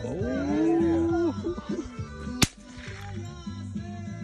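A single rifle shot about two and a half seconds in, over music playing. In the first second a long held voice-like note rises, holds and falls away.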